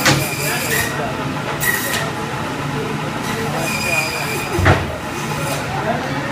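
Steady hum of meat-plant machinery, with brief high metallic squeals and two sharp metal clanks, the louder one near the end.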